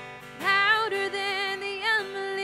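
Contemporary worship song: voices singing a melody with vibrato over a strummed acoustic guitar, the singing coming back in about half a second in after a brief breath between lines.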